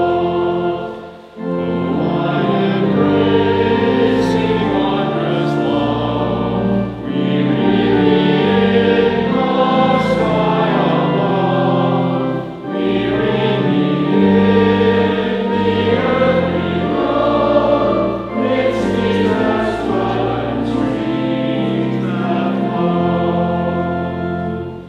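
A church congregation singing a hymn together. Sustained sung lines are broken by short pauses for breath about every five to six seconds.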